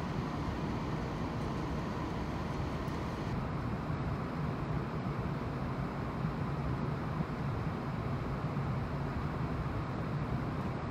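Steady low drone with a hiss over it, heard aboard a large ro-ro ferry under way: its engines and ventilation running evenly.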